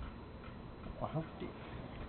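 Kittens playing on a fleece blanket: faint soft ticks and rustles, with a short spoken phrase about a second in.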